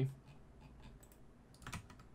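A few faint computer keyboard keystrokes and mouse clicks, spaced apart, most of them near the end.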